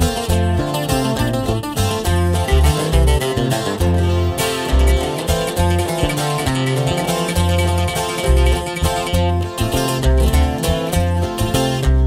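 Instrumental break of a guitar-band corrido: strummed and picked twelve-string and six-string acoustic guitars over an electric bass line, with no singing.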